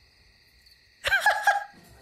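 Near silence for about a second, then a short, high-pitched giggle from a woman.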